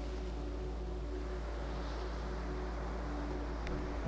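Ocean surf washing up the beach, with wind rumbling on the microphone.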